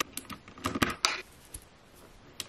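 Round keycaps being pressed back onto the switches of a Lofree Four Seasons mechanical keyboard, each push clicking the switch: a click at the start, a quick cluster of clicks about a second in, and one more shortly after.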